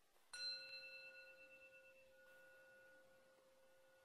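A meditation bell of the bowl type, struck once about a third of a second in. Its clear, bell-like ring fades slowly, and a faint tone is still sounding at the end.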